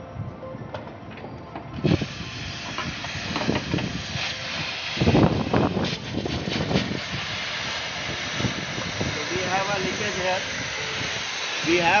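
A steady hiss starts abruptly about two seconds in, with a few knocks and clanks from hands working the copper refrigerant lines and flare nut at an air conditioner's outdoor-unit service valve, loudest a little past the middle.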